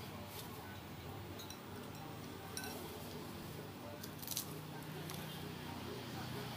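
Eating from a ceramic soup bowl with a metal spoon: a few light clicks and clinks of the spoon, the loudest about four seconds in, over a steady low murmur of background voices.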